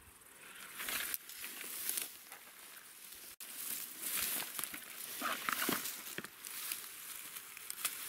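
Dry grass and stalks rustling and crackling irregularly as someone moves through them and parts them by hand.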